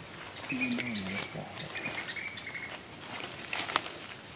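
Crackling and rustling of undergrowth and handling as mushrooms are pulled from a tree trunk. About half a second in there is a brief low voice-like sound that slides down in pitch. Faint high chirp-like tones run through the first two seconds.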